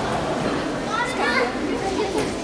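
Indistinct background chatter of children's voices in a sports hall, with no clear words.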